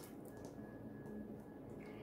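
Quiet room tone with a faint steady high-pitched tone and the faint sound of oracle cards being handled on a table.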